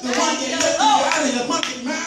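Hand clapping in a church congregation, with voices calling over it.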